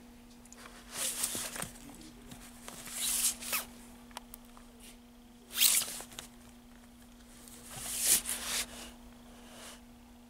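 Cardboard LP record sleeves sliding and scraping against each other as they are flipped through in a plastic bin: about four short swishes a couple of seconds apart, over a steady low hum.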